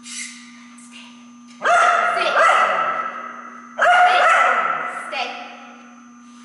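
A dog giving two long calls about two seconds apart, each starting sharply and trailing off over a second or so.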